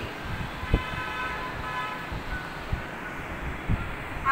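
Chalk writing on a blackboard: a word chalked out with a few short soft knocks of the chalk against the board, over a steady low background rumble.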